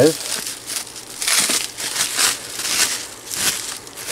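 Plastic bubble wrap crinkling and rustling in the hands as something is unwrapped from it, in irregular bouts of louder and softer crackle.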